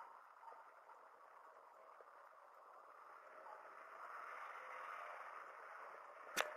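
Near silence: faint steady hiss of room tone, swelling slightly in the second half, with a few barely audible tiny ticks.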